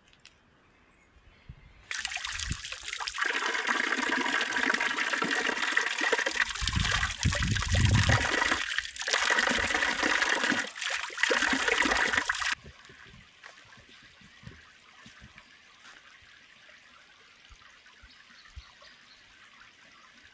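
Thin jet of spring water spouting from a spout in a tree trunk and splashing onto hands and ground: a steady splashing that starts about two seconds in and cuts off suddenly about twelve seconds in, with a few low thuds in the middle. Afterwards only a faint background.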